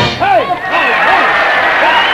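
A big band's number ends on its last loud notes, and a bit under a second in the audience breaks into steady applause with voices calling out.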